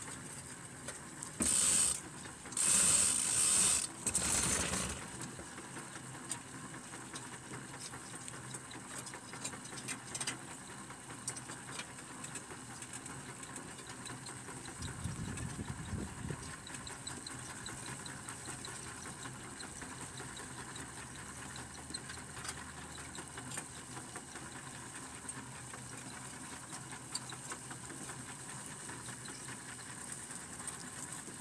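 Steady mechanical rattling and clicking from a weeding tool-carrier's frame and tines working through the soil as it moves along a vegetable bed. Three loud rushing bursts come in the first five seconds, and a low swell comes about halfway through.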